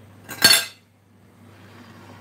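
A single short, sharp clatter of cutlery being set down, with a brief metallic ring.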